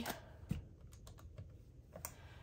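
Faint, light taps and paper rustles of hands handling a stack of paper banknotes, with one soft knock about half a second in.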